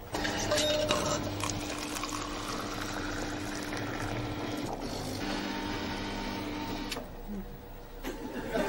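Coffee vending machine running after a button press: a steady motor hum with coffee pouring into a cup. It breaks off briefly about halfway through and stops about a second before the end.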